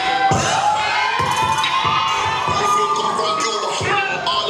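A group of children shouting and cheering together, many voices overlapping, with low thumps underneath every half second or so.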